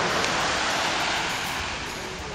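Small waves breaking and washing up a sandy beach: a steady rushing hiss of surf that eases off slightly near the end.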